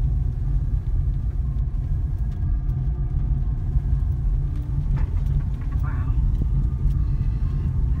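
Steady low rumble of a car's engine and tyres, heard from inside the cabin as it rolls slowly along.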